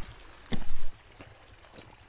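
Footsteps on a rocky dirt and gravel trail, with a short, louder burst of noise about half a second in.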